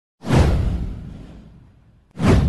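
Whoosh sound effect from a news intro animation: a sudden swell with a deep low end that sweeps down in pitch and fades away over about a second and a half.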